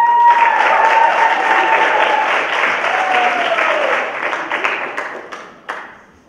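Audience applause: a dense run of hand-clapping that thins out and fades away near the end. Over it there is a long high held whoop in the first two seconds, and a second, falling whoop about three seconds in.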